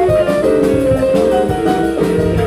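Live band playing an instrumental passage: electric guitar playing a moving line of notes over bass guitar and drums, with a steady cymbal beat.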